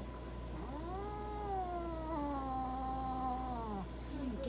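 Ragamuffin cat giving one long drawn-out yowl, starting about half a second in and lasting about three seconds, its pitch rising at first and then slowly sinking before it cuts off.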